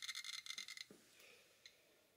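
Handheld Geiger counter clicking very rapidly, a high count rate from radioactive carnotite uranium ore held close to it. The clicking cuts off suddenly a little under a second in.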